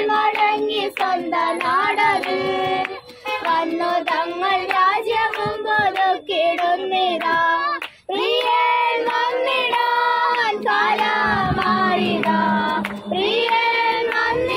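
A group of young voices singing a song together, with some hand clapping along. The singing breaks off abruptly for a moment about eight seconds in, then resumes.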